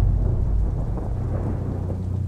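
Deep rumble of thunder with rain, slowly easing off.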